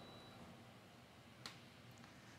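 Near silence: room tone, with one short faint click about one and a half seconds in, a remote-control button being pressed to switch off the air conditioner.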